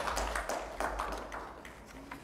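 Scattered handclaps from a small group of seated people: a brief, sparse round of applause, irregular rather than in rhythm.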